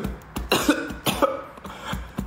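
A man coughing a few times in quick, short bursts.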